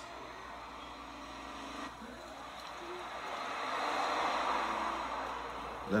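A car driving along a road in a music video's film-style intro, played back: a rushing noise that builds to a peak about four seconds in and then eases off.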